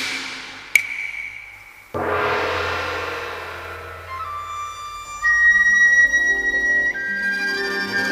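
Cantonese opera instrumental accompaniment. A sharp, ringing percussion strike comes under a second in, then a louder crash fades away from about two seconds in. After that a high, sustained melody line that steps in pitch plays over the ensemble, introducing the tune.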